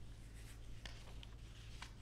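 A steady low hum under a pause in speech, with a few faint, soft clicks and light rustling.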